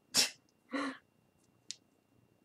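A woman's short, sharp breath out, then a brief voiced grunt, the sounds of straining and frustration while fastening costume-wing straps behind her back. A single faint click comes near the end.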